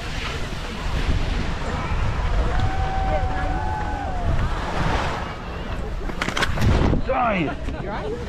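Wind on the microphone of a skier's camera and skis sliding over snow, with faint voices of other people on the slope. About six seconds in comes a quick clatter of knocks as the skier falls onto the snow, followed by a short vocal sound.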